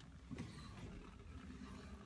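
Faint handling noise, a light knock about a third of a second in and a few soft ticks near the end, as a phone and a small LED video light are picked up and moved, over a low steady car-cabin hum.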